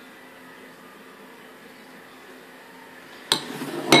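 Quiet room tone for about three seconds. Then a sharp knock, handling noise and a second knock near the end, from kitchen things being moved on the bench.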